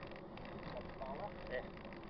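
Steady wind and road rumble picked up by a camera on a moving bicycle, with faint snatches of riders' voices about a second in.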